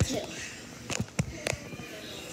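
A loud sharp knock at the start, then three sharp knocks close together from about a second in, against a hardwood floor.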